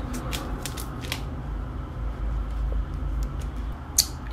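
A few light clicks and taps in the first second, with another sharp click at the end, from hands working the small plastic pieces of a candy sushi-making kit, over a steady low hum.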